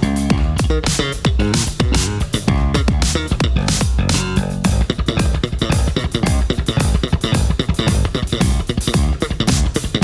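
Electric bass guitar playing a featured solo spot, with a run of plucked low notes over a steady drum beat.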